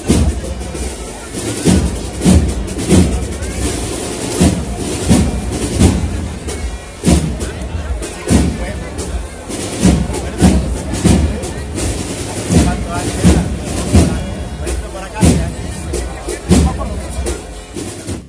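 Holy Week procession band's drums beating a steady march, a heavy drum stroke roughly every two-thirds of a second with sharper snare and cymbal strokes between.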